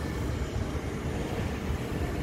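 Steady low rumble with a hiss over it, with no distinct events.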